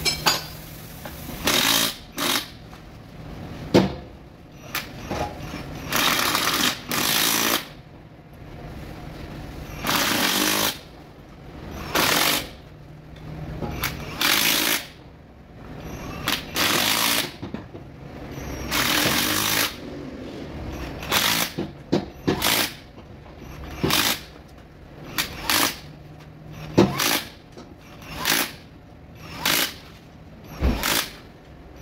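Cordless impact wrench hammering the clamp-ring bolts of a beadlock wheel tight, in repeated bursts of about half a second to a second and a half each, with short clicks between.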